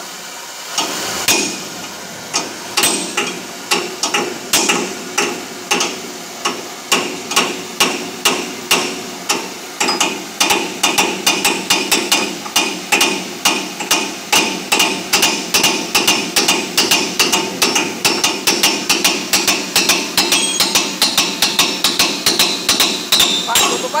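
Hammer blows on the steel wheel hub of a truck, driving at a bearing cone that is stuck and will not come out while the hub is heated by a gas torch. The blows come slowly at first, then speed up about halfway through to a quick steady rhythm of about three a second. The steady hiss of the torch flame runs underneath.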